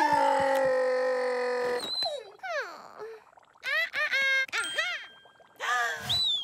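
Cartoon score and sound effects: a held musical chord for about two seconds, then a string of quick sliding-pitch cartoon effects.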